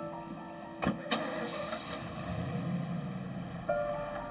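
Pickup truck door shutting with two sharp knocks about a second in, followed by a low engine rumble, under steady background music.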